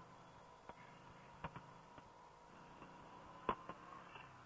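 Near silence: a faint steady hiss with a thin steady tone, broken by a few soft clicks, one about a second and a half in and a couple near the end.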